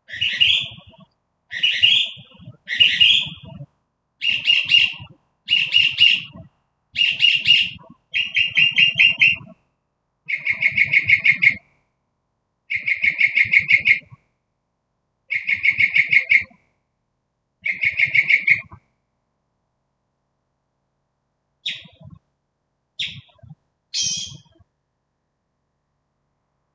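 A bird singing at night in a string of varied phrases about a second long, one after another. The first few phrases are higher and the middle ones are rapid trills a little lower in pitch. After a short pause, three brief sharp notes come near the end.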